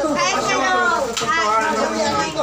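Speech only: several voices talking over one another, some of them high-pitched.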